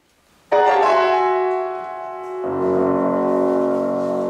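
C. Bechstein grand piano playing: a loud chord is struck about half a second in and left to ring, then a fuller chord with low bass notes comes in about two and a half seconds in and is held.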